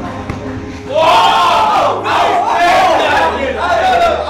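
Several men shouting and whooping together, loud, starting about a second in, as a point is won in a game of soccer tennis.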